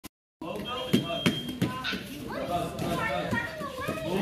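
Children's voices chattering and calling out in a gym, with two sharp knocks about a second in.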